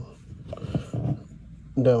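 A man's voice: a low, drawn-out hesitating sound, then the word "down" near the end.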